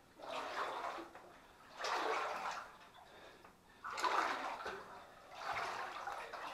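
Legs wading through shin-deep water in a flooded mine tunnel: four separate sloshing strides, about one every one and a half to two seconds.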